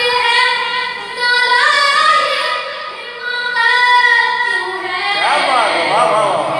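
A boy singing a noha (Shia mourning lament) solo and unaccompanied, in long held notes. About five seconds in, his voice turns in a quick run of rising and falling pitch.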